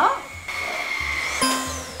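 Cordless stick vacuum cleaner running with a steady high whine, over soft background music. About one and a half seconds in, the whine stops and a bright synth sound effect with a falling whistle takes over.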